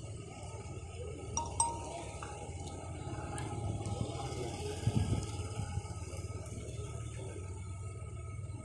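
Outdoor waterfront ambience: a steady low rumble with faint distant voices, a few brief clicks about a second and a half in, and some low knocks around five seconds in.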